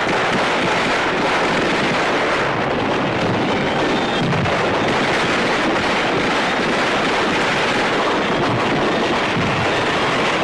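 Heavy, continuous small-arms fire from many rifles and machine guns at once, merging into a steady dense crackle with no single shot standing out.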